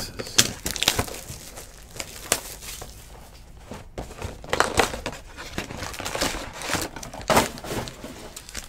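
A Panini Prizm baseball card hobby box being opened and its foil-wrapped packs pulled out: irregular crinkling, crumpling and tearing of wrapper and cardboard, in clusters of sharp rustles.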